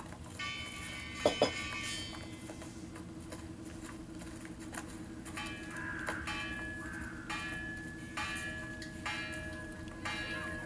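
Film soundtrack played on a TV: a series of held, pitched tones over a steady low hum, with two sharp knocks about a second and a half in.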